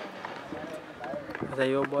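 Men's voices talking outdoors, with one man calling out loudly in a long, held call near the end.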